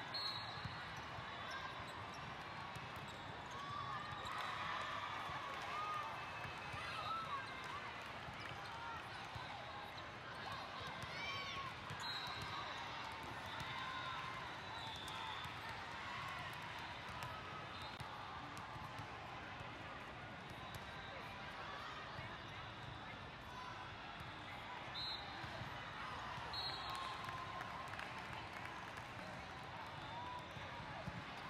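Din of a large hall full of volleyball courts: a steady babble of many overlapping voices, with volleyballs being hit and bouncing on the floor. A few short high squeaks cut through now and then.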